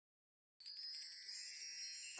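Silence, then about half a second in a soft, high shimmer of wind chimes begins and rings on.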